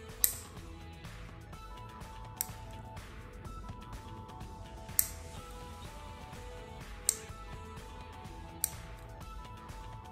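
Metal fingernail clipper snipping through fingernails: five sharp clicks, about two seconds apart, over soft background music.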